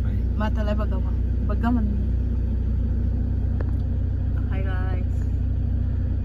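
Steady low rumble of a car's running engine heard from inside the cabin, with a few brief snatches of voices over it.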